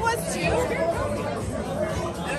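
Indistinct, overlapping chatter of several voices around a restaurant table, at a steady level.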